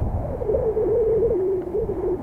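Surf and wind buffeting the microphone make a steady rumble. Over it runs a long, wavering hum-like tone from just after the start until the end.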